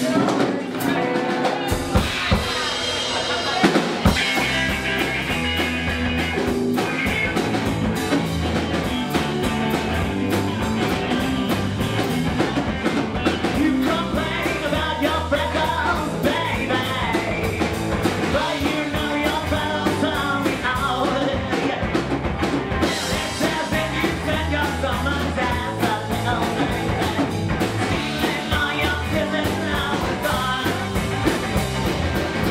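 Live rock band starting a song: a few hard drum hits in the first seconds, then drum kit, electric guitars and bass playing on with a steady beat, with vocals over the band from about halfway through.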